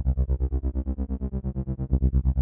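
Instrumental grime/dubstep beat made in FL Studio: a synth bass line stuttering in rapid even pulses, about ten a second.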